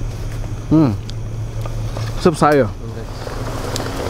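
Two short voiced exclamations from people, one just under a second in and one about halfway through, over a steady low hum.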